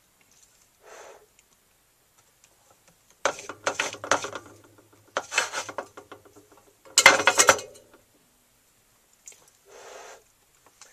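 Handling sounds at a workbench: a faint short rustle about a second in, then three bursts of clattering rattle, the loudest about seven seconds in, as soldering tools and the wire are handled.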